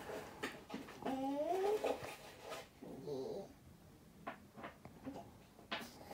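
A faint pitched call in the background that slides up in pitch about a second in, and a shorter one near three seconds. In the second half come light clicks of hard plastic miniature parts being handled and pressed together.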